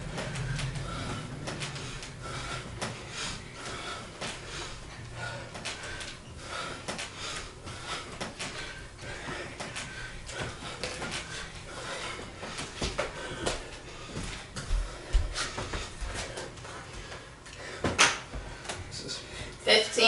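Two people breathing hard through a continuous set of bodyweight squats on a wooden floor, with scattered light knocks. Near the end comes one sharp slap as hands meet the floor to start push-ups.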